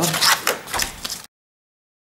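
Sheet of scrapbook paper crinkling and crackling as it is folded along scored lines by hand, in irregular strokes. About a second in the sound cuts off suddenly to silence.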